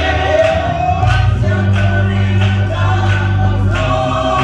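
Gospel song sung by a small group of church singers, a man singing lead into a handheld microphone, over a sustained low accompaniment and a steady beat.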